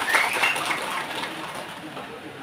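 Audience applause, a patter of many hand claps, dying away over the first second or so.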